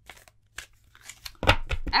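A tarot card deck being handled: scattered soft card flicks and rustles, then a cluster of louder clicks and knocks in the last half second.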